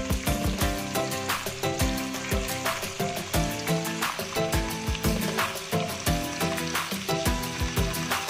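Egg tofu pieces sizzling as they fry in oil in a nonstick wok, with background music carrying a steady beat over it.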